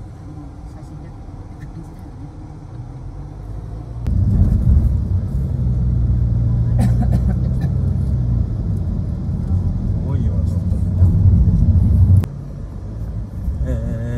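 Car engine and road noise heard from inside the moving car: a low rumble with a steady hum that grows much louder about four seconds in and drops back sharply near the end.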